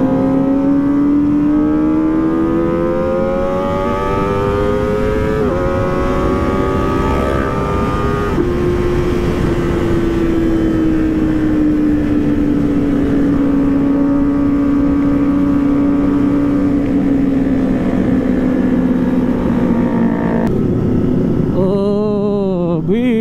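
Kawasaki ZX-25R 250 cc inline-four engine under way at high revs, heard from the rider's seat with wind rush. The engine note climbs for about eight seconds with brief breaks in the pitch, then slowly eases down and holds steady as the bike cruises.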